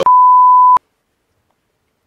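A censor bleep: a single steady high-pitched beep, about three-quarters of a second long, cutting off abruptly, dubbed over a profanity in the speech.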